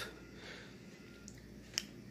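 Quiet room tone, with a faint tick and then one short, sharp click about three-quarters of the way through.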